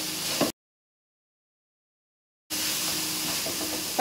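Ground roe deer meat sizzling as it browns in an aluminium frying pan, stirred with a wooden spatula. The sound cuts out completely for about two seconds soon after the start, then the steady sizzle returns.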